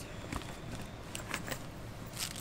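Faint handling noise: soft rustling and a few light clicks as items are fitted into a diaper backpack's pocket.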